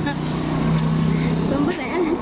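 A motor vehicle's engine running nearby: a steady low drone that stops near the end.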